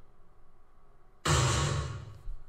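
A boom sound effect played from the computer: a sudden deep blast a little over a second in, fading away over about half a second.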